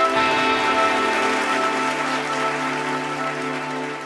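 Trailer music ending on a held chord, a soft hissing wash over it, slowly fading out and cutting off at the end.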